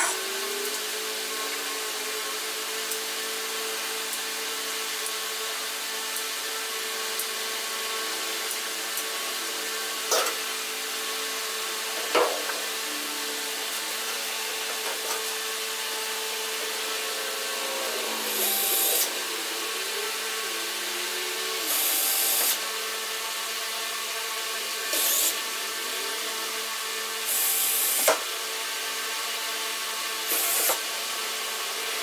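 Steady hum of a box fan with a few sharp knocks. In the second half, a red cordless drill runs in four short bursts, a few seconds apart, drilling into a sheet-metal patch over a hole in the bus floor.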